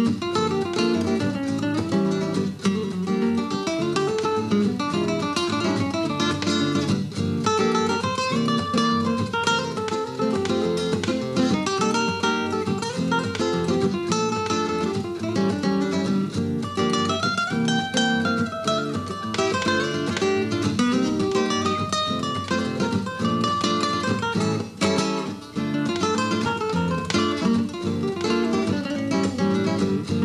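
Two nylon-string Spanish-style acoustic guitars playing a flamenco-flavoured Latin duet, with quick fingerpicked melodic runs over a steady plucked accompaniment and no break.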